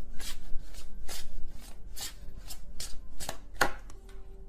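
Tarot cards being shuffled by hand: a quick, slightly uneven run of short card strokes, about three or four a second.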